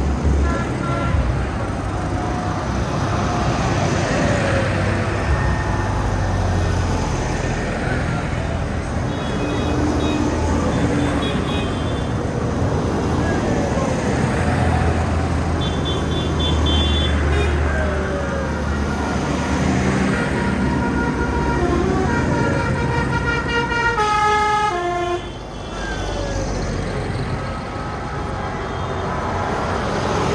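A procession of tractors driving past one after another, their diesel engines running. Horns toot several times, and later one sounds a short run of falling notes.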